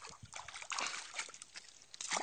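Catfish splashing at the surface of a pond around a baited fishing line: a run of small, irregular splashes and slaps on the water.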